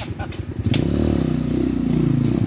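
Rusi trail motorcycle engine climbing a steep dirt hill. It pulses at low revs at first, then grows suddenly louder about a second in, the revs rising and falling under load.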